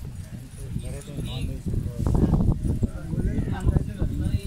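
A large flock of domestic pigeons feeding close together on grain on a concrete floor: low cooing from many birds mixed with a busy patter of pecking and shuffling, livelier over the last two seconds.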